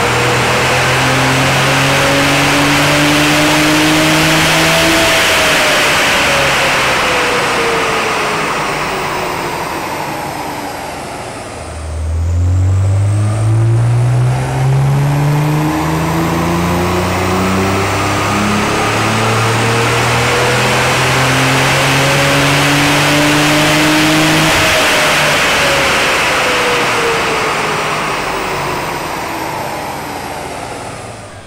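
Nissan 300ZX's twin-turbo VG30DETT V6 pulling at full throttle on a rolling-road dyno. The first pull peaks about five seconds in, then the engine lifts off and the rollers wind down with a falling whine. A second pull climbs steadily from low revs from about twelve seconds in to about twenty-five seconds, then lifts off and winds down again. These baseline runs show the engine well down on power, flat at the top end and running very rich at full revs.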